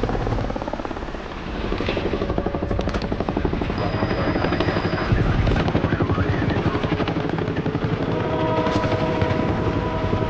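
Helicopter rotor blades beating in a fast, steady chop as the helicopter comes in low to land beside a train, with a few thin held tones joining in over the last couple of seconds.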